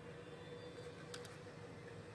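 Quiet room tone with a faint steady hum, and two short scratchy ticks about a second in from a fine-tip pen drawing on paper.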